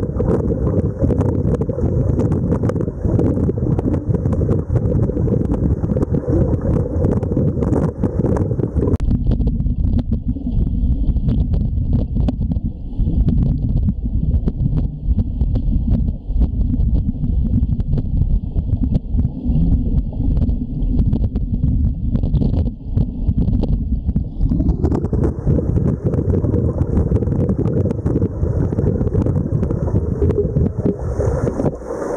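Continuous muffled rumble and churning of pool water recorded underwater as a swimmer passes, with a faint steady high whine above it; the sound changes abruptly twice, where clips are cut together.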